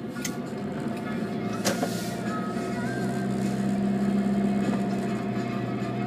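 Inside a moving taxi: steady engine and road hum that grows a little louder a few seconds in, with radio music playing faintly and two sharp clicks in the first two seconds.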